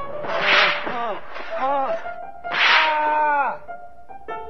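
A dark, sample-like passage from a black metal recording: pitch-bending, wailing voices broken by a harsh noisy burst about every two seconds.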